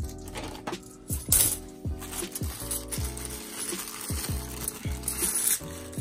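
Bimetallic £2 coins clinking against each other as they are handled and set down, with a plastic coin bag rustling, over quiet background guitar music.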